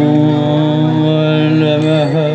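A singer holding one long, steady note in a chant-like style, with musical accompaniment.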